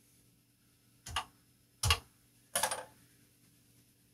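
Keys pressed on a Commodore PET 4032's mechanical keyboard: three separate clacks under a second apart, the last a little longer, over a faint steady low hum.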